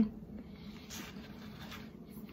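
Faint chewing of a crispy breaded buffalo chicken bite, with two soft crunches: one about a second in and one near the end.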